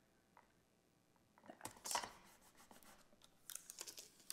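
Faint rustling and crinkling of clear plastic transfer tape under the fingers as vinyl decals are pressed down onto a wooden sign and the tape is lifted. It comes in two short spells, about a second and a half in and near the end, after a near-silent start.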